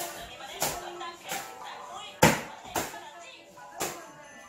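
Toy rackets hitting a ball back and forth in a rally: five sharp smacks about half a second to a second apart, the third the loudest, over background music.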